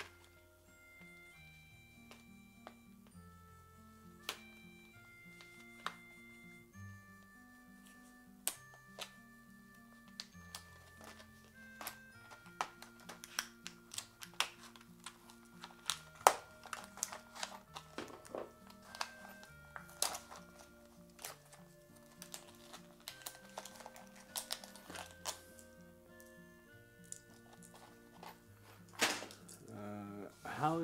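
Quiet background music of held melodic notes, with scattered sharp clicks and knocks of parts being handled from about eight seconds in; one knock near the middle is the loudest sound.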